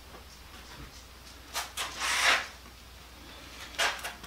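A wooden pallet-board panel being handled and lifted: a couple of light knocks, then a brief scrape about two seconds in, and another knock near the end.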